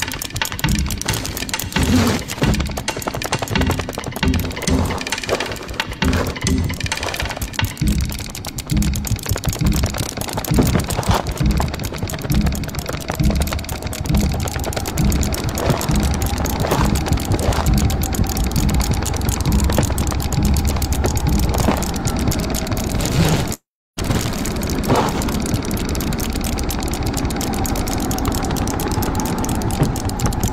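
Soundtrack of an animated short film played through a video call: music with a steady low beat and sustained tones, mixed with the film's sound effects. The audio cuts out completely for a moment about three-quarters of the way through.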